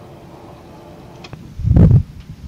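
Steady room hum with a loud low thump about one and a half seconds in.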